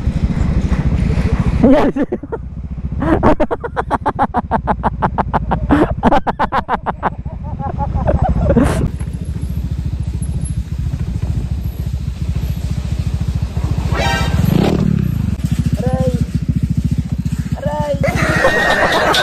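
Motorcycle engine running at low speed over a rough dirt road, with a rapid, even knocking for a few seconds early in the first half. After a change in the sound about halfway through, the engine briefly revs up and drops back a few seconds before the end.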